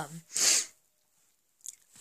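A short, sharp hissing breath drawn by a speaker in a pause, then a faint mouth click.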